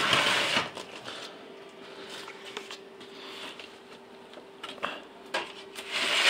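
Rustling noise with scattered light clicks, louder in the first half-second, over a faint steady hum.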